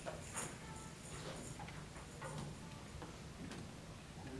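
Faint room noise with a few scattered light clicks and rustles, like seated musicians handling sheet music and instruments.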